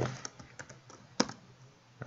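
Computer keyboard keystrokes: a few light key taps, then one sharper keystroke a little over a second in.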